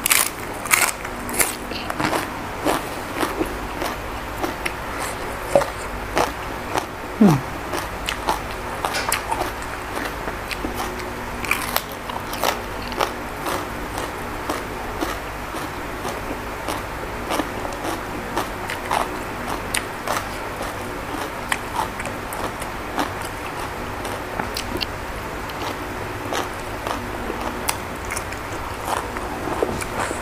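Close-up eating sounds: crisp crunching on a raw bok choy leaf and chewing, in many short irregular crunches.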